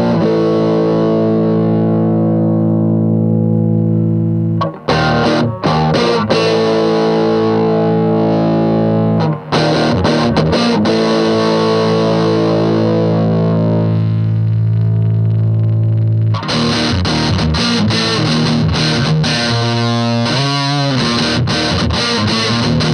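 Electric guitar played through a Boss Metal Zone MT-2 distortion pedal patched into the effects loop of a Roland JC-120 amplifier, so the pedal works as a preamp: three long distorted chords left ringing, then faster riffing with a wavering note near the end.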